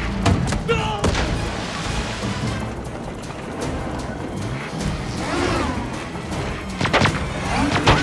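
Action-movie soundtrack: a music score mixed with sharp impact sound effects, two just after the start and a cluster near the end.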